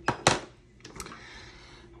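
A few sharp plastic clicks and knocks from handling a lip gloss tube: two loud ones at the start, then two lighter ones about a second in.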